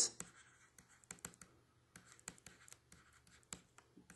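Faint handwriting with a pen: light scratches and irregular small taps as letters are written.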